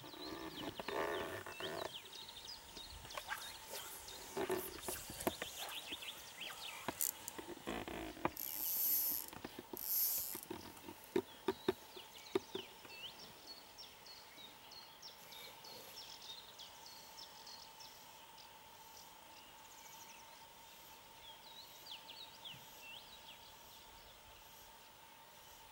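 Small birds chirping and singing in short, repeated calls around a pond. Over the first twelve seconds or so there are rustles, a few sharp clicks and two brief loud hisses, the loudest sounds here.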